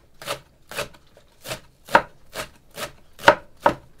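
Kitchen knife chopping green onions on a wooden cutting board: a steady series of sharp knocks, about two a second, two of them louder than the rest.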